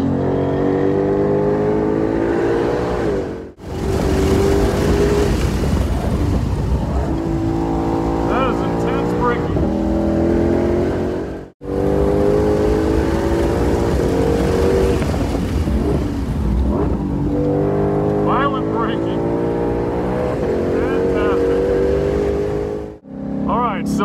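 Ford Shelby GT500's supercharged 5.2-litre V8 heard from inside the cabin while being driven hard on a race track. The engine note rises under acceleration and falls away for braking and corners, in three stretches that break off suddenly.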